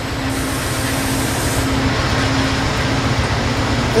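Amtrak passenger cars passing close by at speed: a steady rush of wheels on rail with a low steady hum under it, growing slightly louder.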